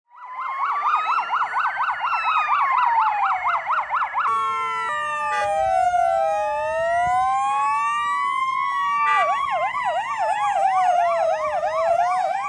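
Several electronic fire-vehicle sirens sounding together in a fast yelp, changing to a slow rising-and-falling wail about four seconds in, then back to the fast yelp about nine seconds in.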